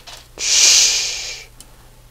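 A single breathy hiss, like a long exhale through the mouth, starting about half a second in and fading out over about a second.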